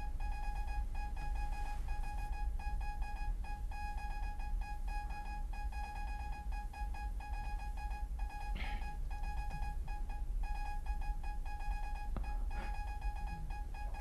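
Quiet background score: one high keyboard note repeated in a fast, even pulse.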